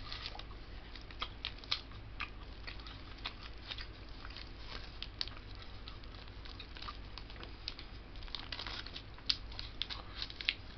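Clear plastic cheese wrapper crinkling in the hands in many short crackles, with chewing of pepper jack cheese eaten straight from the package.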